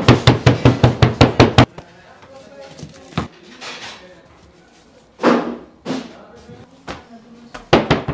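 A wooden bread stamp struck rapidly on a round of flattened dough on a wooden board, about six sharp taps a second, stopping after about a second and a half. A single short thump follows about five seconds in, and a few more knocks come near the end.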